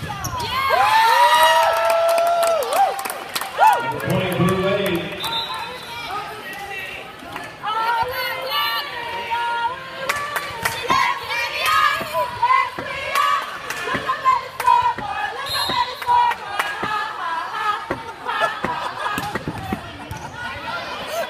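Indoor volleyball match in a large hall: sharp hits of the ball against hands and floor, among players' calls and spectators shouting and cheering, loudest in the first few seconds.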